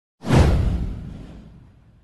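A single whoosh sound effect with a deep low boom under it, starting suddenly and falling in pitch as it fades away over about a second and a half.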